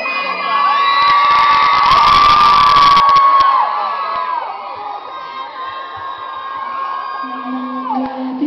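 Concert audience cheering and screaming, many high voices holding long shrill screams, loudest in the first few seconds and then easing off, with scattered clapping while the crowd is loudest.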